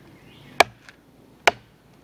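Machete blade chopping into a small wooden pole to cut V-notches: two sharp chops about a second apart.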